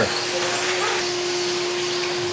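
A wall-mounted vacuum cleaner runs steadily: an even rush of air over a constant motor hum. It is used with a hose to suck dust off clean-room uniforms.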